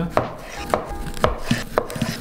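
A kitchen knife slicing a tomato into thin slices on a wooden cutting board, the blade knocking on the board five times, about every half second.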